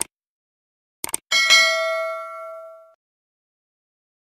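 Subscribe-button outro sound effects: a mouse click, then two quick clicks about a second in. They are followed by a bright bell ding with several ringing tones that fades out over about a second and a half.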